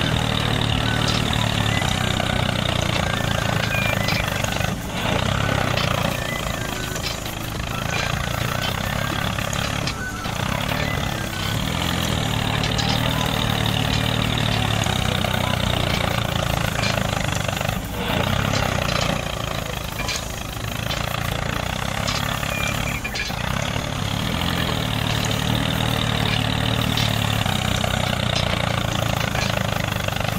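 Miniature toy tractor's motor running steadily as it pulls a seed drill through sand, with a low hum and a few brief dips in level.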